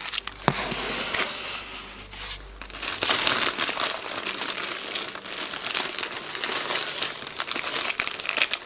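Plastic packaging crinkling and rustling as it is handled, with a sharp click about half a second in and louder crinkling from about three seconds on.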